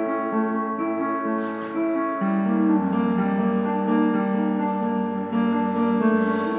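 A cello and a piano playing a duet, with long held notes and a change of chord a little past two seconds in.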